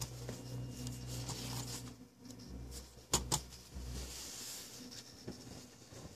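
A low steady hum, with two sharp clicks close together about three seconds in.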